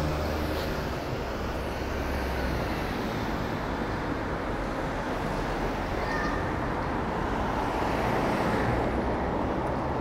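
Road traffic: cars driving past close by, a steady wash of engine and tyre noise, with a low engine hum that fades during the first second. A minivan passes close by around the middle.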